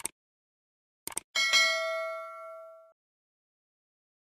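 Subscribe-button animation sound effect: a mouse click, then a quick double click about a second in, followed by a notification-bell ding that rings out for about a second and a half.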